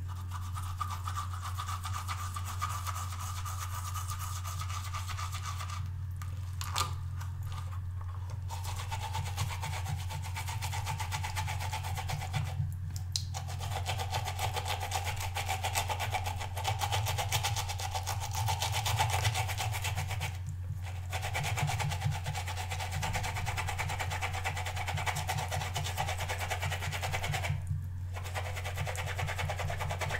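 Paintbrush bristles scrubbed rapidly back and forth on a ridged silicone brush-cleaning pad under a thin stream of running tap water, with a steady low hum underneath. The scrubbing and water sound briefly drop out about four times.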